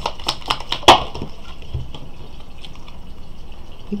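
Small round cards being handled and set down on a hard tabletop: a quick run of light clicks and taps in the first second, the loudest about a second in, then only low background hiss.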